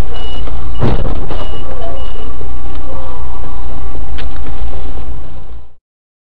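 A box truck's reversing alarm beeps about twice a second as the truck backs toward the car, over loud, distorted dashcam noise. A heavy thump comes about a second in, and the beeping stops a little past two seconds. The sound fades out near the end.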